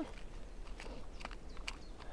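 Hands rummaging for a small item, with faint rustling and a few light clicks from about the middle on.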